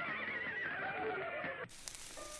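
A high, warbling sound on an old 1930s cartoon soundtrack, cutting off suddenly near the end.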